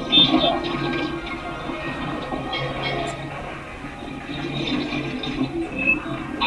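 Television soundtrack heard through the TV's speaker: music over a steady low hum, with a few short sound effects.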